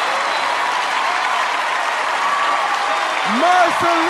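Audience applauding, with a voice starting up near the end.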